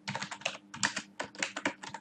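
Typing on a computer keyboard: a quick, even run of keystrokes, about four characters a second.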